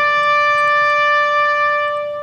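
A bugle holds the long final note of a ceremonial call, steady, beginning to die away at the very end.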